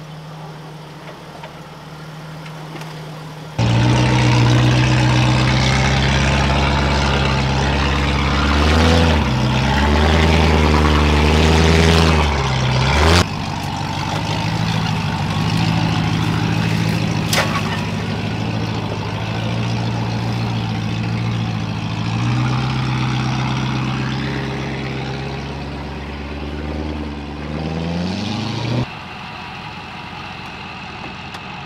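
4WD engines working hard up a steep rutted track, with revs rising and falling: a Land Rover Discovery's 3.9-litre V8 among them. The sound jumps abruptly louder a few seconds in and changes again about halfway, and a short rising rev cuts off near the end.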